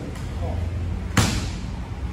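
A single sharp slap of a martial-arts impact about a second in, a bare-footed step or strike on the mat or partner during a kenpo self-defence drill, with a short echo off the hall.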